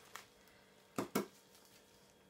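Hands handling small objects on a tabletop: a faint click near the start, then two sharp clicks close together about a second in, in a quiet small room.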